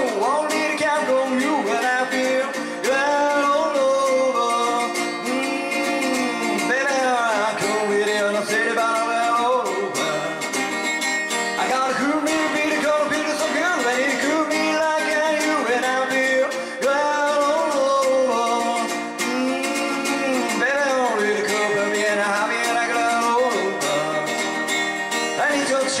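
Amplified acoustic guitar played live, strummed and picked in an upbeat rockabilly rhythm, with a man singing.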